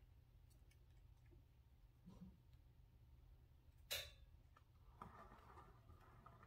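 Near silence: a steady low hum, with a few faint clicks and one sharper click about four seconds in.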